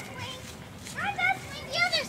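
A child's voice speaking quietly, starting about a second in, over faint outdoor background noise.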